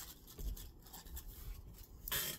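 Faint rustling and handling of a plastic Peeps package as the marshmallow Peeps are pulled out, with a low thump about half a second in.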